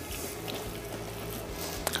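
Quiet background music under the wet squish of a rubber spatula folding a salmon mixture in a glass bowl, with a couple of faint clicks.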